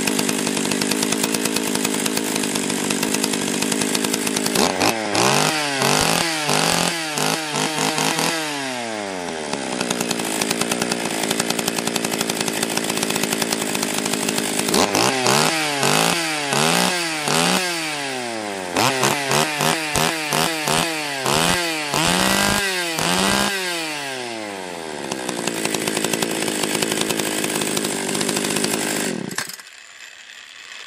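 Stihl 020 two-stroke chainsaw engine running while its carburettor's high and low mixture screws are adjusted: it idles steadily, is revved up and down repeatedly in two spells, about five seconds in and again from about fifteen seconds, then cuts off abruptly near the end.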